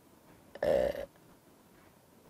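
A man's drawn-out hesitation sound, "uh", about half a second in, while he searches for a word; otherwise quiet room tone.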